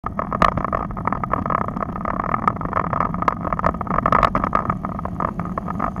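A road bicycle being ridden on asphalt, heard through a handlebar-mounted camera: a steady rush of wind and road rumble, with frequent irregular sharp clicks and rattles from the bumps.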